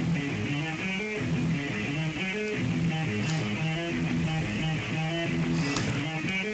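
Electric guitar playing a quick riff of short picked notes.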